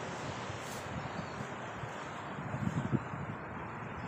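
Steady outdoor noise with wind buffeting the microphone, rougher and louder for a moment a little past halfway.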